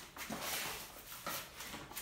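Handling noise of cosmetics packaging: rustling and a few soft knocks as small product boxes are put aside and the next items are picked up.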